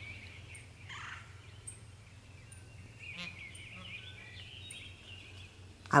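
Quiet outdoor garden ambience with faint bird calls. About three seconds in there is a brief, rapidly repeating rattling call, like a farm fowl calling some way off.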